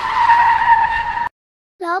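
Car tyre-screech sound effect: a steady, high squeal of skidding tyres as a vehicle brakes to a stop. It cuts off abruptly about a second and a half in.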